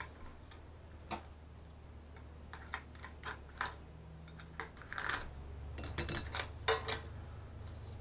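Light, scattered clicks and taps from a small hinged metal tin being handled and pried at while a folded paper instruction sheet is worked out of its lid, with brief paper rustling. The handling noises grow busier in the second half, over a low steady hum.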